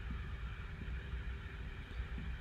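Steady low background rumble and faint hum of room noise, with no distinct event.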